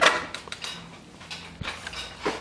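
Skateboard wheel flicked by hand and left to spin on mud-caked bearings, its rattle fading quickly as it slows, with a few clicks as it starts and a sharp knock near the end.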